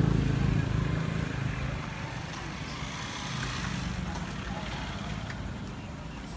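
A motor vehicle's engine hum, loudest at first and fading away over the first two seconds as it passes, leaving general street background noise.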